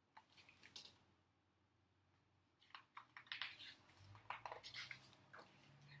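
Near silence broken by faint rustles and light clicks of a hardcover picture book being handled and its page turned, in two spells with a silent gap between.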